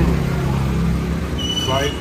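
A low, steady engine hum of road traffic, with a man's voice starting about one and a half seconds in.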